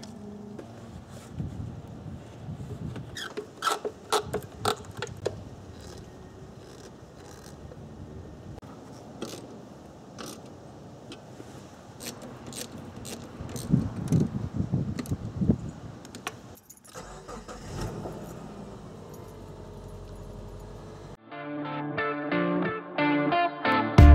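Hand tools clicking and clinking on metal in the engine bay, with a ratchet wrench and extension being worked as parts are tightened back down. Music starts near the end.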